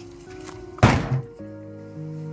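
A door shutting with a single thud about a second in, over soft background music of held chords.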